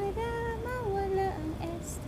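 A woman singing alone in a high voice: one long held note that steps up and then down, followed by a few short, lower notes.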